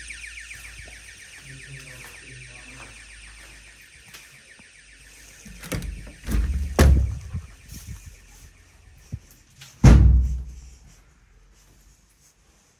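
A building alarm sounding with a rapid pulsing electronic tone, growing fainter over the first few seconds. Then heavy door thuds: a couple around six to seven seconds in, and the loudest, a slam, near the end.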